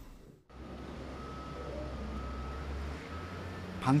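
Outdoor background: a steady low hum with a faint high beep repeating a few times.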